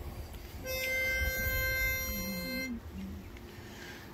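Pitch pipe blown for one steady reedy note lasting about two seconds, giving the barbershop quartet its starting pitch. A low voice briefly hums the note just after.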